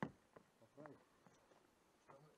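Near silence, broken by a single sharp knock at the very start and one quietly spoken word a little under a second in.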